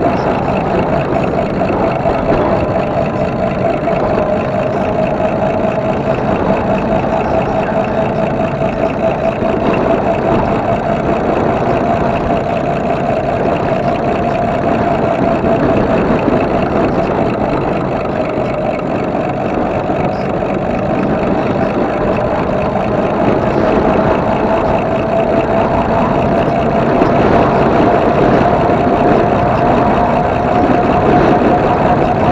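Electric bike riding along a paved trail: a steady whine that sags a little past the middle and climbs near the end, over a constant rush of wind and tyre noise.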